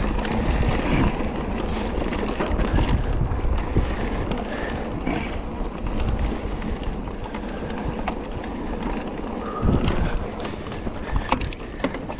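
Mountain bike ridden fast along a dirt track: wind buffeting the microphone over the rattle of the bike and tyres on the rough ground, with a few sharp clicks near the end.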